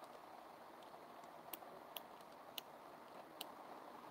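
Near silence, with a few faint, irregular clicks from a Geekvape Aegis Legend vape mod's battery cover being worked shut by hand.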